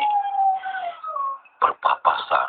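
A long howl that slides slowly down in pitch for about a second, with a fainter falling wail overlapping it, followed by a man's voice near the end.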